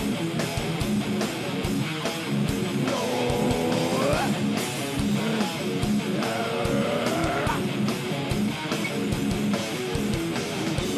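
Heavy metal band playing live: distorted electric guitars, bass guitar and drums with a steady kick drum, in an instrumental stretch between sung lines. Two long held notes bend in pitch, about three seconds in and again about six seconds in.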